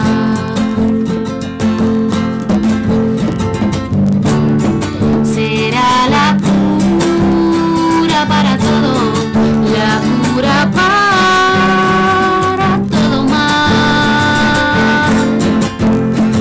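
Two acoustic guitars playing a song together, strumming chords with picked melody notes.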